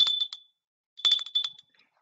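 Small metal handbell shaken twice, about a second apart, each time a few quick clapper strikes over a high ringing tone that fades within half a second.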